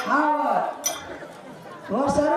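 Speech: a voice talking for about the first second, then a quieter stretch.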